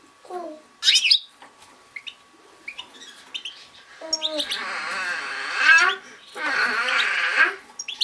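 Caged goldfinches calling: a sharp rising chirp about a second in and a few short call notes. Two longer bursts of fast twittering song follow in the second half.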